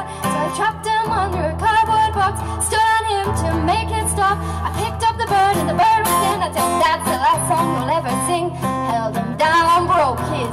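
A woman singing a melody into a microphone, backed by a strummed acoustic guitar, performed live.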